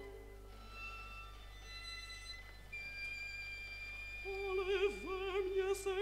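Quiet passage of an opera orchestra in a 1957 recording, just after a loud full section breaks off: soft held chords, a high note held from about three seconds in, then a melody line with wide vibrato entering about four seconds in.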